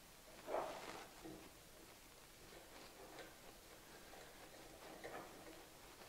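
Very quiet handling of small hardware: a PTFE screw being turned in by hand into the aluminium loop's plates, giving faint scattered ticks, with one soft brief handling sound about half a second in.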